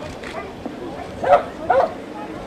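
A dog barking twice, short and in quick succession, a little past halfway.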